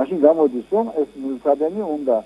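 Speech only: a person talking continuously in Georgian.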